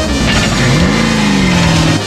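Drift car's engine revving hard during a practice run. Its pitch drops sharply about half a second in, picks up again near one second, then slowly sinks.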